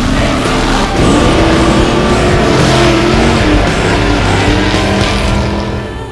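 Race vehicle engine revving, its pitch climbing about a second in and then rising and falling, mixed with loud heavy rock music.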